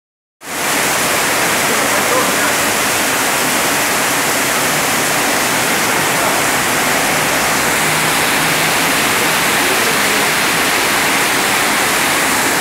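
Rainwater pouring through a roof that has caved in under heavy rain, a loud steady rush of falling water.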